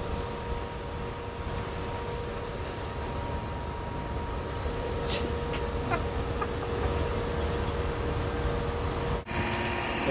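Steady low outdoor rumble with a faint steady hum over it, and a couple of brief clicks about five and six seconds in; the sound breaks off suddenly shortly before the end.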